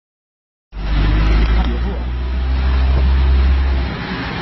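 A steady low rumble with a hiss over it, like a motor vehicle running, cutting in suddenly under a second in, with voices faint beneath it.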